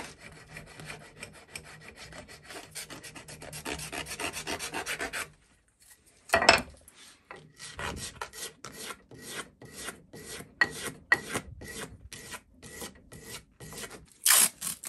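Edge of a plastic pickguard being hand-sanded against a half-round wooden block wrapped with sandpaper, to shape the curved edge. Quick continuous rubbing strokes run for about five seconds. After a brief pause and a sharp knock, slower separate strokes come about two a second.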